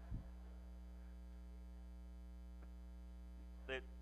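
Steady electrical mains hum in the sound system, a low, even drone, with a brief low thump just after the start and a faint tick about halfway through.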